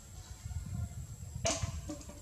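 Low, uneven rumble of wind on the microphone, with one short, sharp sound about one and a half seconds in and a fainter one just after.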